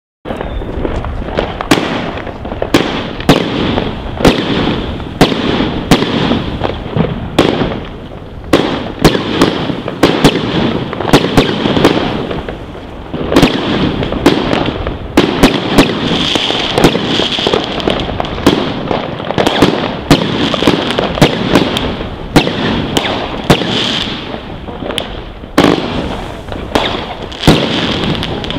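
A Wolff 'Cruel Traction' consumer firework going off shot after shot, about one to two sharp bangs a second, over a continuous crackle.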